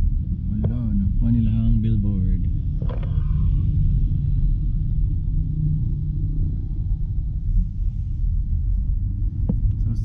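Steady deep rumble of a car's engine and tyres on the road, heard from inside the moving car's cabin.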